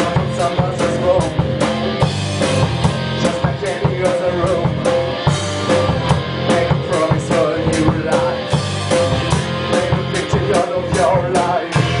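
Rock band playing a song, with a drum kit keeping a fast steady beat of about four strikes a second under pitched instruments.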